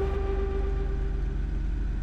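Steady low drone of the 1987 Toyota Land Cruiser's engine and drivetrain heard from inside the cab while driving. A single held mid-pitched tone lies over it and fades out near the end.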